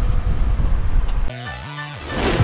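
A low rumbling noise cuts off about a second and a half in, and electronic intro music begins with a rising synthesizer sweep over held low notes.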